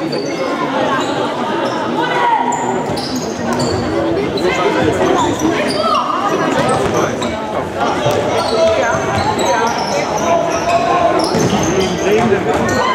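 Indoor football in a sports hall: the ball being kicked and bouncing on the hard floor and boards, shoes squeaking in short high chirps, and players and spectators calling out, all echoing in the hall.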